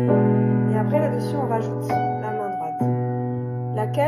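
Piano playing a waltz: a right-hand melody over deep bass notes held with the sustain pedal, the bass changing to a new note about three quarters of the way through.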